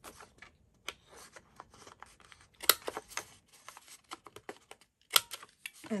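Handheld corner rounder punch snapping through patterned cardstock paper: several sharp clicks, one per corner, the loudest near the middle, with faint paper rustling between them.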